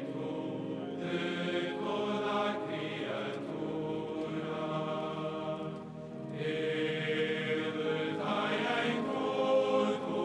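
A choir sings a Vespers chant in long, held phrases, with a brief pause for breath about six seconds in.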